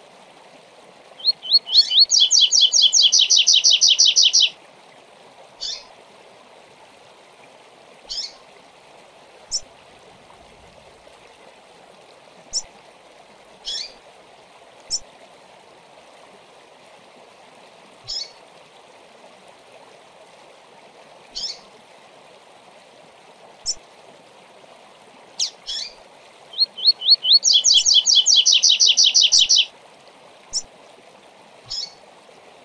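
Male double-collared seedeater (coleiro) singing a 'tui tui zel zel zel' song twice, once near the start and once near the end. Each song is a few separate notes that quicken into a fast run of repeated notes lasting about three seconds. Single short chips fall every couple of seconds in between, over a steady low rushing background.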